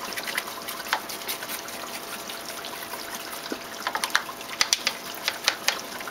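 Water trickling steadily, with irregular short clicks and scratches that come thickest about four to five and a half seconds in: a toothbrush scrubbing algae off the glass window of an SM100 algae scrubber.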